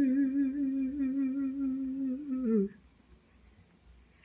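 A man's voice humming one long held note with a slight waver, gliding down in pitch and fading out about two and a half seconds in: the closing note of an unaccompanied song.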